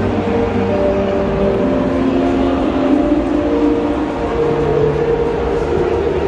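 Steady din of a busy exhibition hall, with held musical notes changing pitch every second or so, like music playing over loudspeakers.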